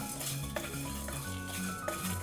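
Wooden spatula stirring and scraping whole spices (fennel and cumin seeds, bay leaf, star anise) around a nonstick kadai, the spices sizzling in hot oil as they are tempered. Background music with steady bass notes plays underneath.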